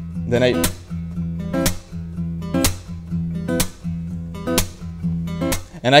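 Acoustic guitar with Keith banjo tuners, plucked about once a second with each chord left to ring, while the pegs are turned during play so the strings' tuning shifts between notes.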